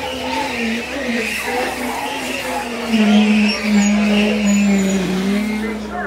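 A safari ride truck's engine running close by, a steady hum that wavers in pitch and grows louder about three seconds in.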